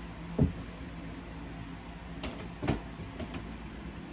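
Two dull knocks, a sharp one about half a second in and a weaker one just before three seconds in, as sneakers are handled and picked from a pile, over a steady low hum.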